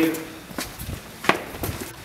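A few footsteps in shoes on a concrete floor, with one sharper knock just past halfway.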